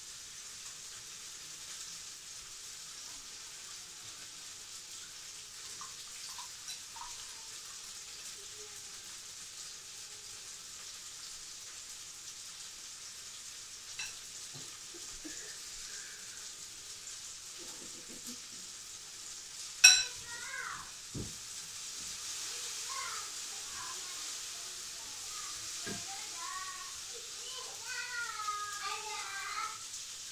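Scrambled eggs sizzling steadily in a frying pan, with a few light clinks of a utensil and one sharp knock about two-thirds of the way through.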